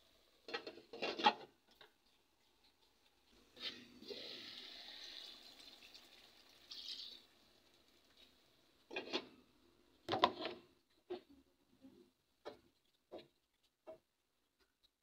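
A glass lid clatters onto a metal cooking pot, followed by a few seconds of soft hiss. About nine seconds in the lid clatters again as it is lifted off, and a few light knocks follow.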